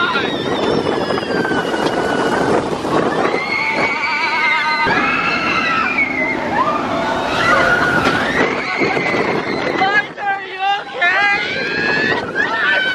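Several roller-coaster riders screaming and whooping, with long wavering shrieks that overlap, over a steady rushing noise from the ride.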